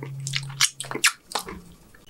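Close-miked wet chewing and lip smacking while eating a saucy birria taco: a quick string of sharp wet clicks, with a low steady hum through the first second.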